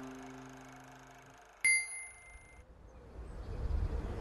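The last chord of a guitar-backed tune fading out, then a single high, bright bell-like ding that rings for about a second and cuts off abruptly. Low background rumble rises near the end.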